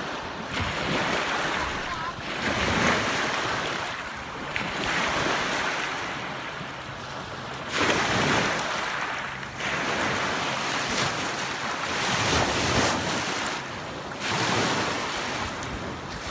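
Small lake waves breaking and washing over a pebble shore, a fresh wave surging in every two to three seconds.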